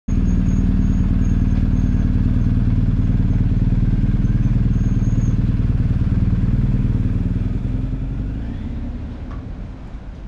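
Motorcycle engine running steadily at low revs, a low pulsing exhaust note, which fades away over the last three seconds.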